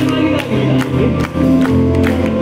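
Live band playing: drums keep a steady beat under guitar and keyboards, with long held notes stepping up and down in pitch.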